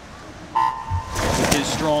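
Electronic start signal for a backstroke race: one steady beep lasting about a second, starting about half a second in. It is followed by a burst of noise as the swimmers push off the wall, and a man's voice begins at the very end.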